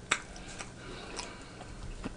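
A handful of soft, wet mouth clicks from chewing food with the mouth closed, the sharpest just after the start.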